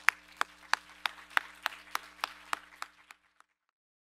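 Small audience applauding, with one nearby pair of hands clapping sharply at about three claps a second above the rest; the applause fades and stops about three seconds in.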